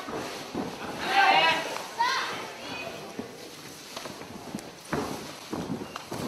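A few high-pitched shouted calls from voices in a small hall, loudest around one to two seconds in, then a few dull thumps near the end.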